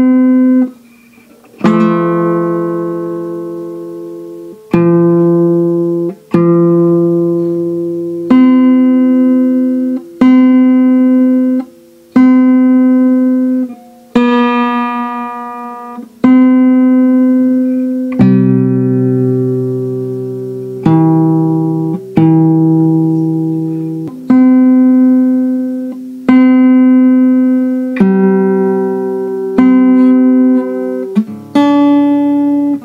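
Steel-string acoustic guitar fingerpicked slowly in standard tuning through Am, F and C chord shapes. Each group of plucked notes rings out and fades over about two seconds before the next attack.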